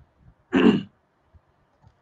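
A man clearing his throat once, briefly, in a pause between phrases.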